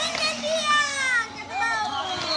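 Young children's voices: two high, wordless calls or babbles, each falling in pitch.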